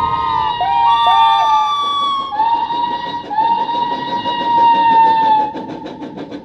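Fire-engine siren wailing in long held tones, three in a row, each sliding up at the start and dropping away at the end, with two short yelps about a second in; it fades out near the end.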